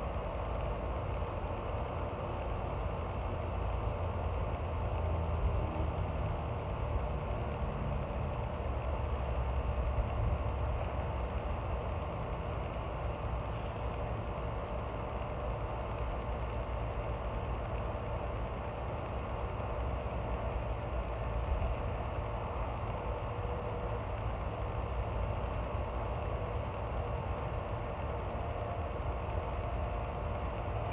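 A steady mechanical hum with a low rumble, like an engine or motor running without change.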